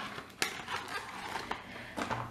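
A cardboard box being opened by hand and a clear plastic blister tray of small nail polish bottles slid out: one sharp click about half a second in, then a few softer clicks and rustles.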